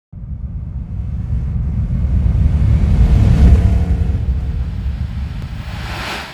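Deep car engine rumble that swells to its loudest about halfway through and then eases off, while a hissing whoosh builds toward the end.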